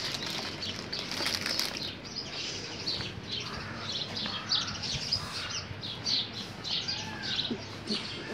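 Small birds chirping: a steady run of short, high chirps, two or three a second.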